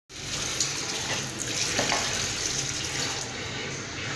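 Water running steadily from a tap into a sink.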